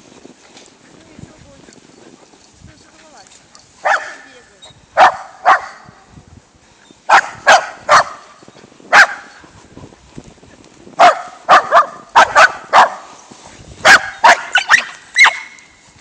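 Welsh corgi barking: sharp barks, singly and in quick runs of two to four, starting about four seconds in. These are warning barks at a larger akita.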